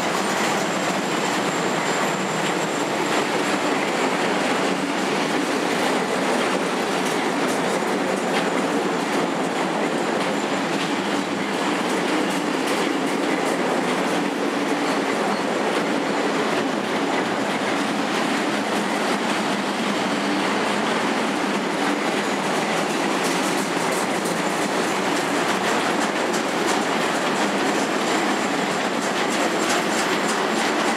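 Freight train of covered car-carrier wagons rolling steadily past, the wheels clattering over the rail joints in a continuous run of clicks, with a faint high wheel squeal over the first third.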